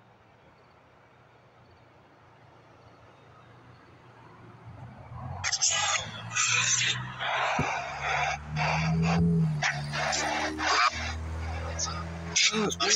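Spirit box sweeping through radio stations. It is faint for the first few seconds, then from about five seconds in it gives choppy bursts of static with snatches of broadcast sound, chopped every fraction of a second.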